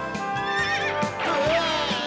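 A cartoon horse whinnying, one wavering neigh about one and a half seconds in, over background music with a steady beat.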